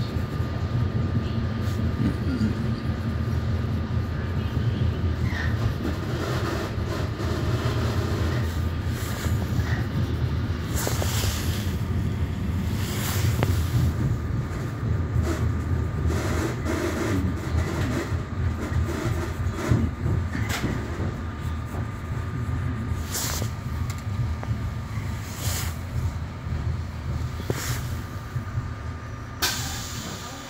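Metra Rock Island commuter train running, heard from inside the passenger car: a steady low rumble with a faint steady high whine, and a few short sharp sounds now and then.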